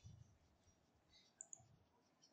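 Near silence with faint computer mouse clicks, two small ones about one and a half seconds in.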